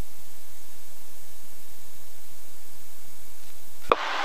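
Steady hiss of a light twin airplane's cabin noise heard over the headset intercom. It is an even, unchanging rush with faint steady engine tones beneath.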